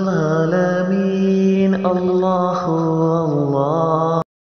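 A voice chanting zikr, holding a long drawn-out 'Allah' with slowly gliding pitch.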